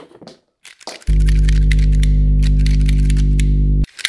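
A loud, steady low drone, an intro sting, starts about a second in and cuts off abruptly just before the end. Under it runs a quick clacking of wire strippers snapped open and shut like castanets.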